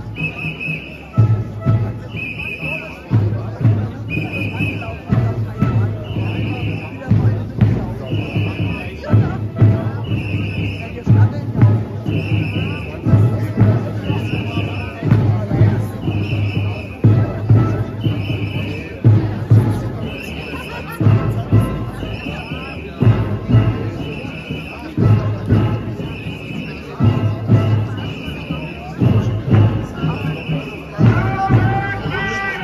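A steady, even beat about once a second, each beat a low thud paired with a high ringing tone, over the murmur of a marching crowd.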